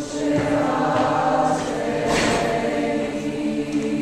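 Mixed school choir singing slow, sustained chords from the first movement of a Requiem Mass.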